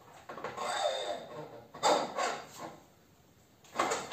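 Motorcycle front fork leg being slid up into the triple clamps: metal scraping and sliding, then a pair of sharp knocks about two seconds in and another knock near the end as the tube is seated.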